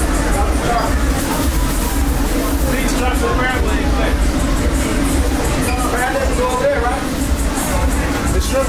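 Indistinct background voices over a steady low rumble, with faint music.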